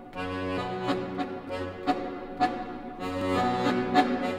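Victoria chromatic button accordion playing sustained chords punctuated by sharp accents, about two a second.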